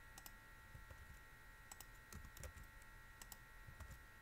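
Faint, irregular clicks of computer keyboard keys and a mouse as an equation is typed and pasted into a document, over a faint steady high electrical whine.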